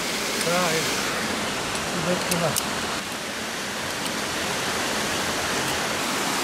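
Steady rush of a mountain stream cascading over rocks, with faint voices in the background about half a second and two seconds in.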